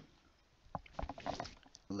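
A quick run of small clicks and rustles close to a microphone, about a second long, starting about a second in.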